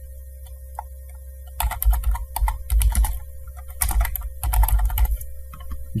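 Typing on a computer keyboard: quick runs of keystrokes start about a second and a half in and stop about a second before the end, over a faint steady hum.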